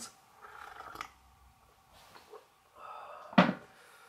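A man taking a quick sip of tea: soft sipping and breathing sounds, then one loud short knock near the end.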